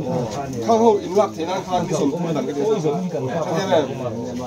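Speech only: a man talking continuously, with no other sound standing out.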